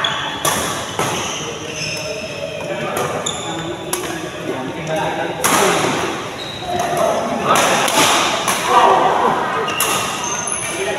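Badminton rackets striking the shuttlecock during a doubles rally: short, sharp hits that echo in a large hall, with people's voices going on in the background.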